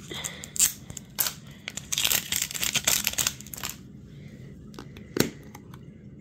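Clear plastic wrapping crinkling and tearing as a plastic heart-shaped toy capsule is unwrapped and handled. A few light clicks follow, with one sharp click about five seconds in.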